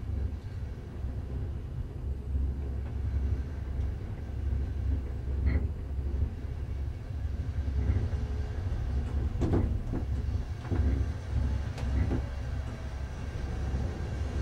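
Enclosed cable car cabin travelling along its cable: a steady low rumble, with a few sharp clicks and knocks in the second half.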